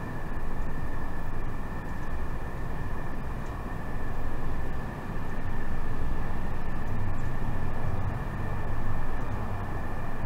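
Steady low rumbling background noise, with two faint steady high-pitched tones held above it; the loudness swells and dips gently.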